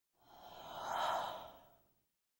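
A breathy whoosh sound effect that swells up to a peak about a second in and then fades away.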